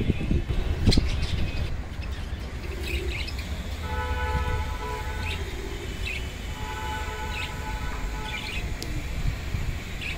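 Budgerigar giving short, scattered chirps, while a horn with several steady notes sounds two long blasts, one about four seconds in and one about six and a half seconds in. A single sharp knock about a second in.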